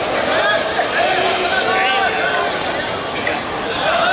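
Men's voices calling out across a football pitch, with thuds of a football being kicked in play.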